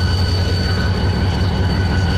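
Pakistan Railways GMU-30 diesel-electric locomotive running slowly up the line close by, with a deep steady engine rumble and a steady high whine.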